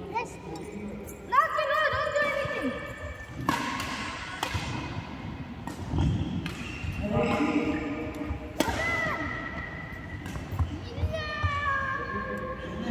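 Badminton rally: several sharp racket hits on the shuttlecock, a second or more apart, with thuds of players' footwork, over voices in the hall.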